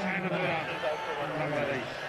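A man's voice talking, in drawn-out, wavering stretches with short pauses, over a steady hum of background noise.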